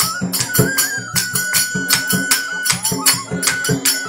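Dogri pahari folk dance music: a fast, even beat of drum and jingle strikes under a high melody line that holds long notes and steps between pitches.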